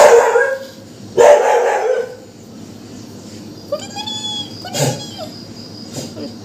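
A tabby kitten mewing a few short times about four seconds in. Two loud, harsh bursts near the start are louder than the mews. A steady high chirr of crickets runs behind.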